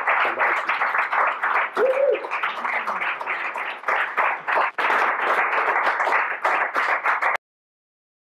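Audience applauding, a dense patter of many hands, with one brief voice rising and falling about two seconds in. The applause cuts off suddenly near the end.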